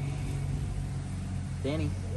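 A steady low mechanical hum, like an engine running, carries on underneath; a voice calls the dog's name near the end.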